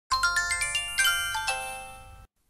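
Short intro jingle of bright, bell-like chime notes: a quick rising run of notes, more notes struck about a second in and again about a second and a half in, each ringing on and slowly fading.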